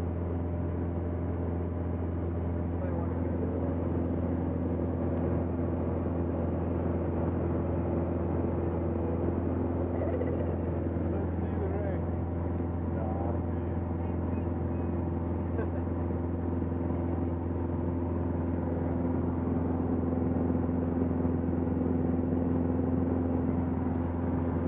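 Light aircraft's engine and propeller droning steadily inside the cabin in cruise flight, holding one low pitch throughout.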